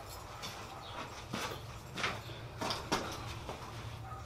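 Quiet workshop: a low steady hum with five or six faint, sharp ticks about a second apart.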